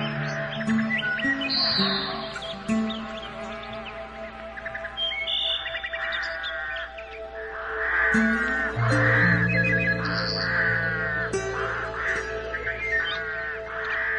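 Slow relaxation music with sustained low notes, overlaid with birdsong: chirps and trills, then a series of short, repeated calls about twice a second in the second half.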